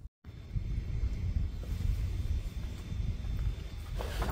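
Wind buffeting the microphone outdoors: an uneven low rumble over a steady hiss, starting after a brief moment of silence.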